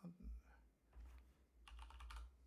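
Faint typing on a computer keyboard: a few quick clusters of keystrokes.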